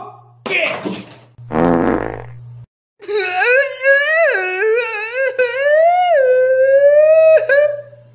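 A man's voice wailing in one long, loud, wavering note that slides up and down in pitch for about four seconds, breaking off near the end. Before it come two short raspy, blaring noises.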